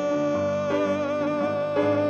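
A man's singing voice holding one long note while a grand piano plays chords underneath that change a few times.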